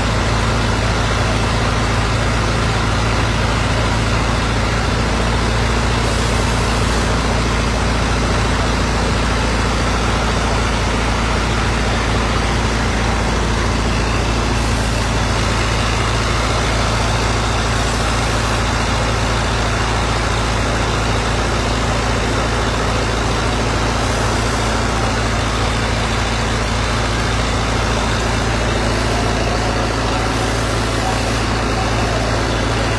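Fire truck engine running at a steady speed with a constant low hum, driving its pump to feed the fire hoses.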